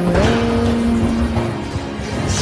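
A car engine sound, its pitch stepping up just after the start and then holding steady, over background music.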